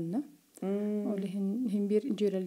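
A person talking, with a short pause about a third of a second in, followed by a long held hesitation sound at one steady pitch, then more talk.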